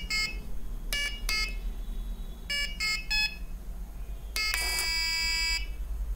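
Breadboard buzzer of an Arduino memory game beeping: a run of short beeps at several different pitches as the buttons and LEDs light in turn, then one long, steady tone of about a second near the end, the game's sound for a lost round.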